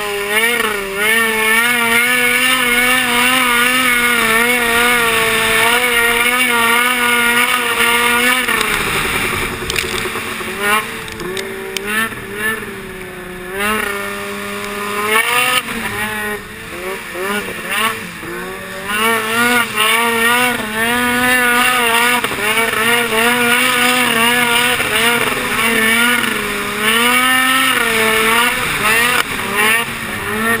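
Snowmobile engine running at speed, its pitch wavering up and down with the throttle; it eases off about eight seconds in and again around fifteen seconds, then picks back up.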